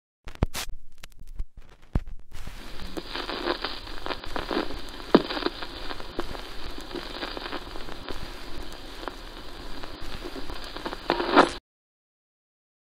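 Crackle and hiss, like a worn vinyl record's surface noise: a few sharp clicks at first, then steady hiss full of small pops and crackles that stops suddenly shortly before the end.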